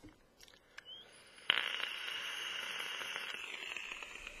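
A drag on a vape (e-cigarette): after a few faint clicks, a steady airy hiss of breath starts suddenly about a second and a half in, holds for a couple of seconds, then tails off.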